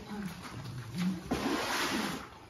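Kunekune pigs grunting low as they feed on lettuce, short grunts near the start and about a second in. This is followed by a louder, noisier stretch of snuffling and chewing over the last part.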